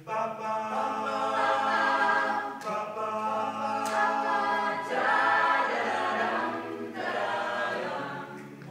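Mixed-voice high school a cappella chorus singing in harmony, several voice parts moving through chords together without instruments.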